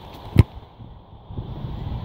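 A single sharp thud of a foot kicking a football off the tee, less than half a second in, followed by a low rumble of wind on the microphone.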